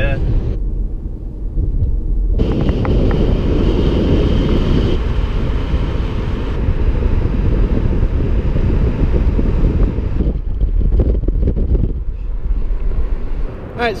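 A car driving, heard as deep road rumble with wind buffeting the microphone. The noise changes abruptly several times.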